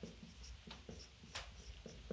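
Faint strokes of a felt-tip marker writing on a whiteboard, a few short separate strokes with one slightly louder about a second and a half in.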